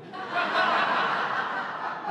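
An audience laughing together at a joke: a swell of many voices that builds about half a second in and then slowly tapers off.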